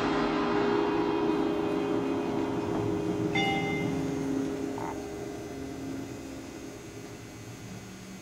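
A low held musical chord rings on and fades slowly after the drumline's final hit. Two short higher tones sound about three and five seconds in.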